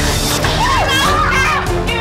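Two young women shrieking and yelling at each other as they grapple, over held chords of background music.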